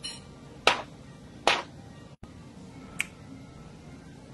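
Two sharp finger snaps, the first about two-thirds of a second in and the second under a second later, then a lighter snap near three seconds.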